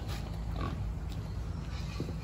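Pigs calling faintly, with a short call about half a second in, over a steady low machine hum.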